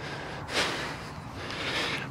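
A short, sharp breath out through the nose close to the microphone about half a second in, followed by a softer, longer breath near the end.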